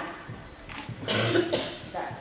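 A person's single short cough, about three-quarters of a second in and lasting under a second.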